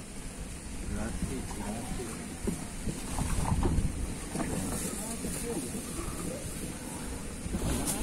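A small wooden outboard boat coming in to its mooring: a low, uneven rumble with faint, muffled voices now and then.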